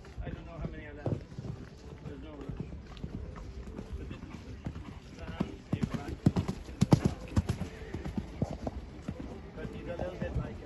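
A horse's hoofbeats on a sand arena, a rapid run of thuds that grows loud for a couple of seconds past the middle as the horse passes close by, with voices in the background.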